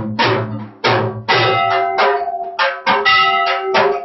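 Aarti music with drums struck in a steady rhythm of about two strokes a second, with held ringing tones sounding between the strokes.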